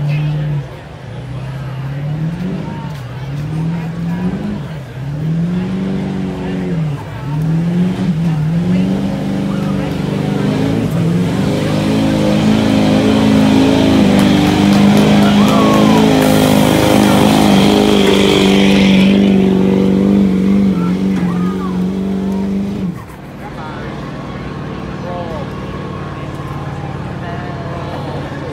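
Chevrolet diesel pickup truck engine revved up and down several times, then held at high revs under full load while pulling a sled for about fifteen seconds, with a loud hiss joining in the middle of the run. The engine cuts off suddenly about 23 seconds in and drops back to a low idle.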